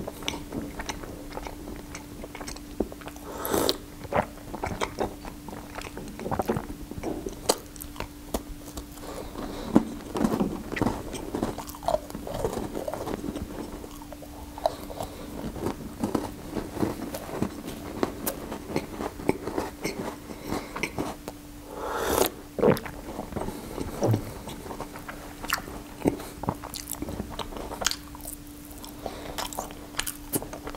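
Close-miked chewing and biting of a chocolate-glazed curd snack (glazed syrok): wet mouth sounds and many small clicks, with louder bites about ten seconds in and again a little past twenty seconds. A faint steady low hum runs underneath.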